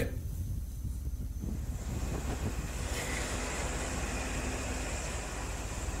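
Faint, steady outdoor background noise picked up by an open live microphone: a low rumble with a hiss that grows slightly after about a second and a half.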